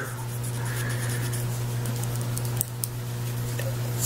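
Faint scratching of a narrow abrasive polishing strip rubbed inside a split bolt connector, cleaning oxidation off its contact surfaces, over a steady low hum.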